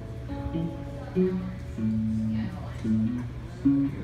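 Acoustic and electric guitars playing an instrumental gap between vocal lines: a single-note melody line steps up and down over the strummed chords.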